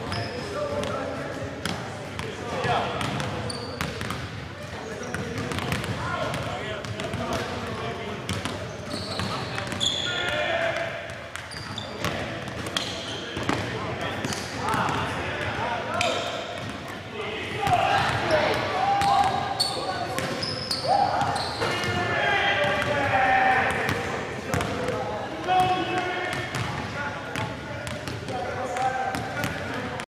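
Basketballs bouncing on a gymnasium's hardwood floor, with indistinct voices, all echoing in the large hall.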